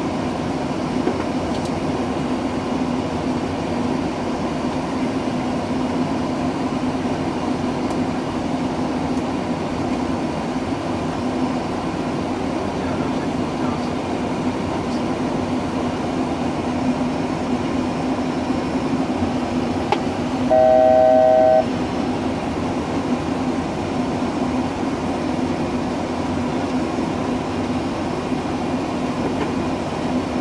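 Steady flight-deck noise of a Boeing 737 in flight: constant airflow and air-conditioning noise with a low hum. About two-thirds of the way through, a steady electronic cockpit alert tone sounds once for about a second.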